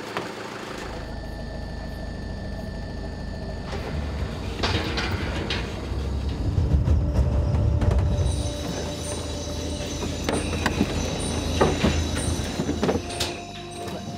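Car driving at night along a road, a steady low rumble of engine and tyres that starts about a second in and is loudest around the middle. In the latter part, high insect chirps repeat about twice a second.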